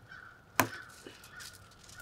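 Chicken bones cracking under hand pressure as a spatchcocked chicken's breast is pressed flat: one sharp snap about half a second in, then a fainter one.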